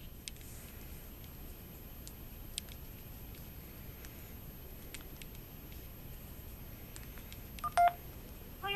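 A cell phone's keypad gives one short two-tone touch-tone beep near the end as the digit '1' is pressed. Before it there is only faint room noise with a few faint clicks.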